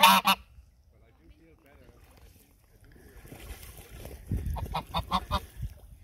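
Domestic white geese honking: a loud honk right at the start, then after a few quiet seconds a quick run of honks, about five a second, lasting roughly a second near the end.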